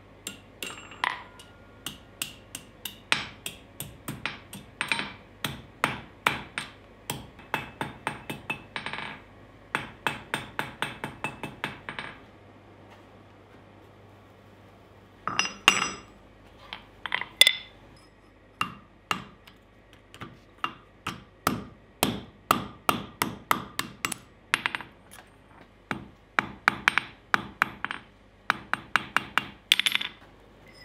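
Blacksmith's hand hammer striking hot steel rod on an anvil in runs of about two blows a second, each blow ringing off the anvil. The hammering stops for about three seconds near the middle, then picks up again.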